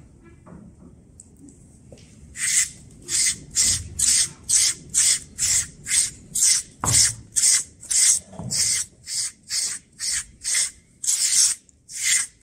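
A SleekEZ deshedding tool's serrated blade rasping down a horse's coat in short, quick, even strokes, about two a second, starting about two seconds in; each stroke scrapes out loose hair.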